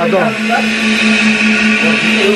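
A cylinder-head flow bench running, its suction motors giving a steady hum and a rushing hiss of air drawn through the motorcycle cylinder head's port. The hiss grows stronger about a second in.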